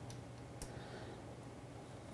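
Faint room tone with a steady low hum and a single light click a little over half a second in.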